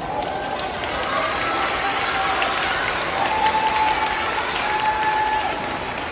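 An audience, mostly schoolchildren, clapping steadily in welcome as a performer is announced and walks on, with voices calling out over the applause.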